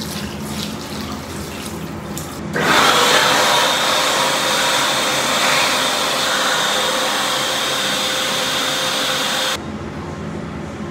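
Washroom tap running as hands are washed, with splashing. About two and a half seconds in, a louder steady rush with a motor whine starts suddenly, like an electric hand dryer spinning up, and cuts off abruptly near the end.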